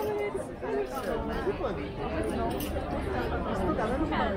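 Bystanders talking, several voices overlapping in casual chatter.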